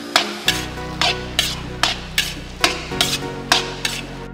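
Steel spatula striking and scraping a black iron kadai while stirring and mashing a thick potato-vegetable samosa filling, about ten strokes at a steady two or three a second. Background music plays underneath.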